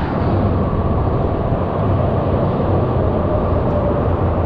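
Steady low rumble of road traffic from highway bridges overhead, with a faint thin whine in the second half.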